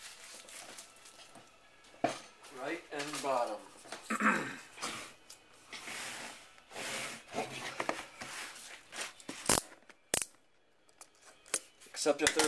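Cardboard trading-card boxes being handled, slid and opened by hand, with rustling and two sharp knocks near the end, under a man's voice.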